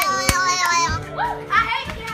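A group of children's excited voices, talking and calling out over one another, with music sounding along with them.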